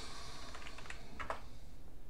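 A few light keystrokes on a computer keyboard, typing a short word into a search box. The clearest two come close together about a second and a quarter in.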